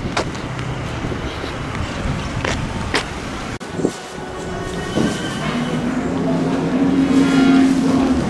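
Footsteps walking on pavement with open-air background noise, then, after a break a little past halfway, a steady low droning hum with faint higher tones that grows louder toward the end.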